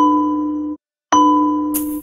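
Cartoon grandfather clock chiming: two bell-like strokes about a second apart, each ringing and fading. These are the fourth and fifth strokes as the clock strikes five. A brief high hiss comes in near the end.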